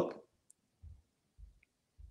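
Near silence in a pause between a man's spoken sentences: his voice trails off at the start, then two faint low thumps follow, about a second in and half a second apart.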